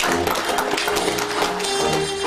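Traditional jazz band playing live: cornet leading with a long held note over strummed banjo, sousaphone, drums and reeds.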